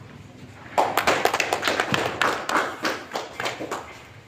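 A small group of people clapping by hand. The applause starts sharply about three-quarters of a second in and thins out near the end.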